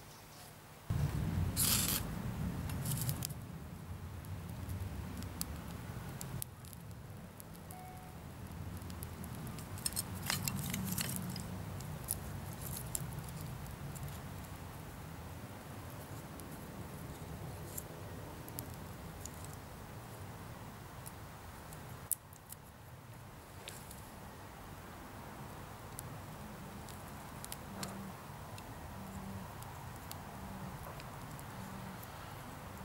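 Fire steel scraped with a striker to throw sparks into dry grass tinder: several short rasping scrapes, with a cluster of them about ten seconds in, over a steady low rumble.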